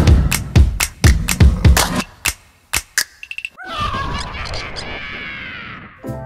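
Intro theme music: a punchy beat of heavy drum hits that stops about two seconds in, then after a short pause and a couple of last hits, a held chord that slowly fades out.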